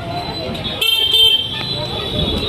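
A small electric vehicle horn gives two short beeps about a second in. Behind it runs the steady din of a crowded street: voices and traffic.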